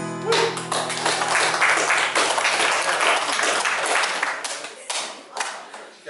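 The last held chord of a worship song on acoustic guitar and voices stops a moment in, and applause breaks out. The clapping thins to a few scattered claps near the end.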